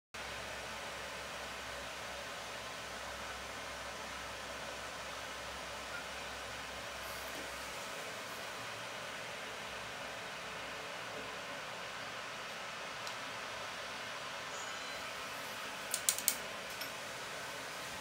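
Steady, even hiss of background noise, with a quick cluster of sharp clicks about sixteen seconds in.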